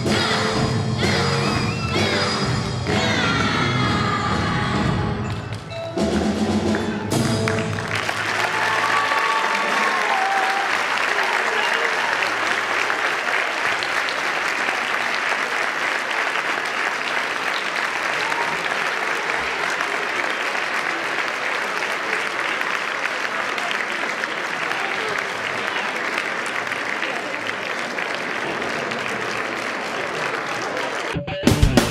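A school string orchestra and choir play the last bars of a piece, ending about eight seconds in. Audience applause then follows and holds steady to the end.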